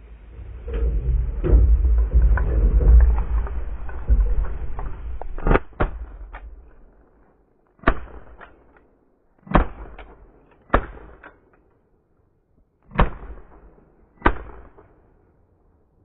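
Several seconds of rumbling and knocking handling noise as hunters move in the blind, then a string of about seven sharp shotgun reports, fired one at a time over the next nine seconds as they shoot at incoming waterfowl.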